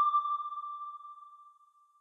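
Electronic ping sound effect: a single high, pure tone that fades away over about a second and a half.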